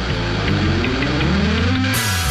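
Garage-rock band playing a short instrumental break: a pitched note slides steadily upward over about a second and a half above steady low bass notes, with no singing.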